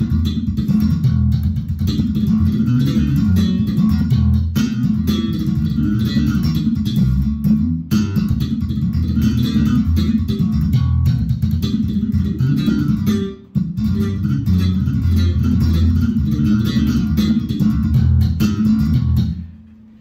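Squier Contemporary active Jazz Bass with humbuckers played solo: a continuous run of plucked bass notes, with a brief break about thirteen seconds in. The playing stops just before the end.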